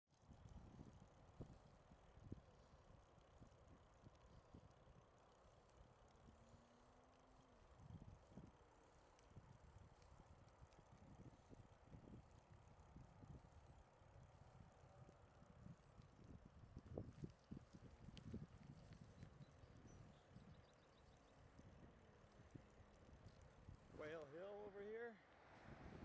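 Faint wind and road rumble on a bicycle-mounted camera's microphone while riding, with frequent small bumps and knocks from the bike going over the pavement. A voice comes in near the end.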